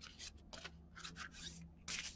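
A deck of large oracle cards of thick, coated cardstock being shuffled by hand: soft, quick sliding and flicking strokes of card against card, about four or five a second, faint.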